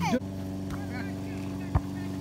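A ball is kicked once near the end, a single sharp thud, over a steady motor-like hum. A brief voice sound comes right at the start.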